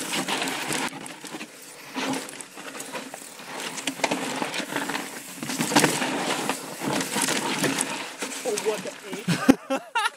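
Full-suspension mountain bike (Yeti SB4.5) ridden slowly over rocky ledges, its tyres, chain and frame giving irregular clicks, rattles and knocks, with a sharp knock near the end.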